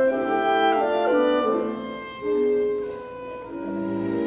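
Opera orchestra playing an instrumental passage between sung lines: sustained notes stepping downward, a swell about halfway through that falls back, and low notes entering near the end.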